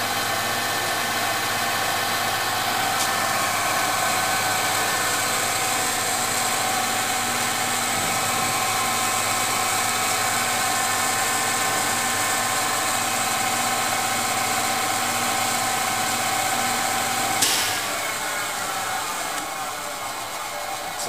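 Seest MC 62 crankshaft grinder running: a steady electric-motor whine with several held tones. Near the end a sharp click, after which the running sound drops and fades.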